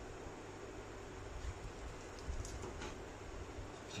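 Faint handling of a plastic figure and its parts: a few small clicks and rustles as pieces are fitted, over a steady low room hum.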